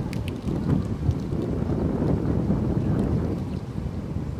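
Wind buffeting the camera microphone: a loud, uneven low rumble.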